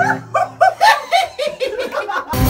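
Loud laughter in quick, yelping bursts, about four a second. Under it a low bass guitar note is left ringing and dies away partway through.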